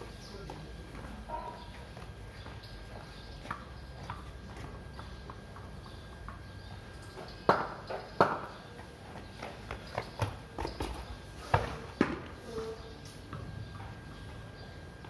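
A tennis ball being played on a tiled courtyard floor, knocking sharply on the tiles and off a wooden cricket bat. The loudest knocks come in two pairs, one just past the middle and one later on, with lighter taps and footsteps on the tiles around them.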